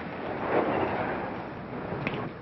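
A car driving up and pulling to a stop: a noisy rumble that swells about half a second in and then eases off.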